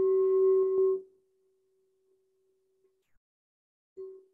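Singing bowl struck with a wooden mallet, ringing a steady tone with higher overtones. The tone is loud for about a second, then drops to a faint ring that dies away. A second, softer strike comes right at the end.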